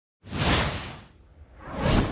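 Two whoosh sound effects for an animated logo intro. The first swells in just after the start and fades over about a second; the second builds up toward the end.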